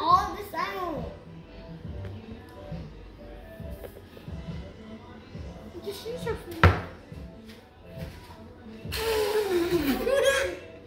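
Children's voices over faint background music, with one sharp knock about two-thirds of the way in.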